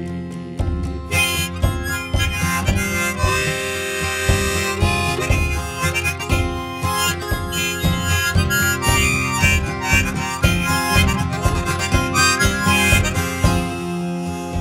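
Instrumental break in a folk ballad: a harmonica playing held melody notes over picked acoustic guitar.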